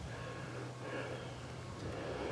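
Quiet outdoor background with a faint, steady low hum.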